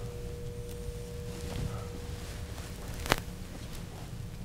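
Quiet dry-erase marker work on a whiteboard: a faint, thin, steady tone, then a single sharp tap about three seconds in.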